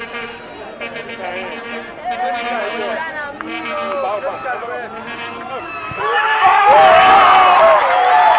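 Spectators shouting and talking around a football pitch as an attack builds. About six seconds in this jumps to louder, massed crowd shouting and cheering as a goal goes in.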